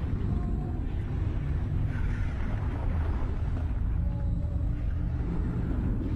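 Steady low rumbling water ambience, as heard underwater, with a few faint, brief higher tones over it.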